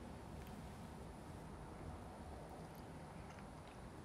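Near silence: faint steady room tone, with a few faint ticks.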